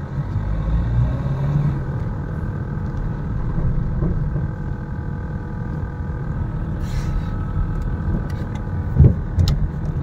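Steady low rumble of a car driving at a constant pace, its engine and road noise heard from inside the cabin. A brief thump comes just after nine seconds in.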